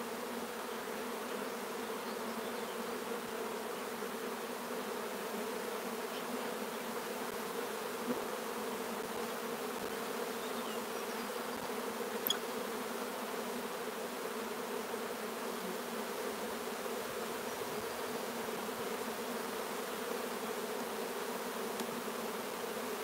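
Honeybees from an opened hive humming steadily, a low even buzz of many bees in the air and on the combs. A couple of faint clicks from hive handling near the middle.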